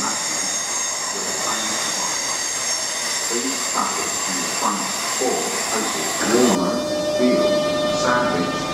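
Electric multiple-unit trains moving through a station platform: a steady high-pitched whine from the trains, with voices underneath. About six and a half seconds in, the sound changes abruptly to a different set of steady tones from a train close by.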